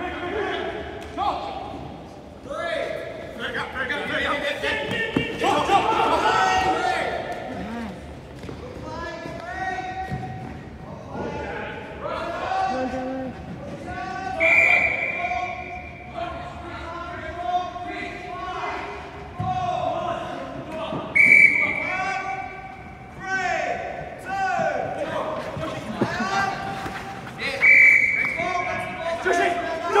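Players' voices calling and shouting across a large indoor sports hall, with scattered knocks and thuds from the ball and play. Three times, about six or seven seconds apart, a held high tone sounds for a second or so.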